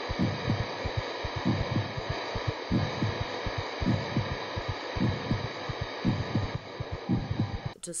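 Heartbeat: paired low thumps, lub-dub, about once a second, over a steady hiss and hum.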